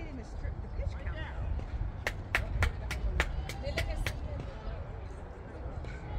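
A quick run of about eight sharp hand claps, roughly four a second, starting about two seconds in. Under them is a steady low wind rumble on the microphone and faint distant voices.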